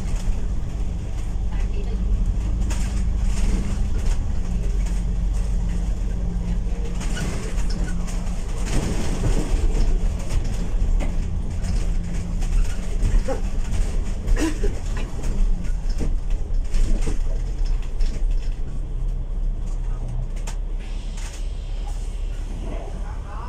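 Alexander Dennis Enviro500 MMC double-decker bus running along a wet road, heard from inside the upper deck: a steady diesel engine and drivetrain note with tyre noise. Short rattles and squeaks come from the bodywork around the middle. The sound eases near the end as the bus slows to a stop.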